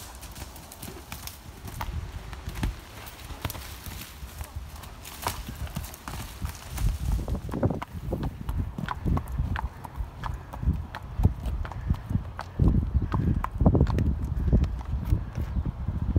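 A horse's hoofbeats: a run of thuds that grows louder from about halfway through and is loudest near the end.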